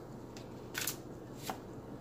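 Tarot cards being handled: a few short papery swishes as a card is slid off the deck and turned over, the strongest just under a second in.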